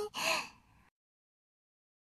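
A cartoon girl's short, breathy voice sound without words, in two quick parts right at the start, then dead silence.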